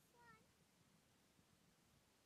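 Near silence, broken about a quarter second in by one short, faint high-pitched vocal call lasting about a quarter second.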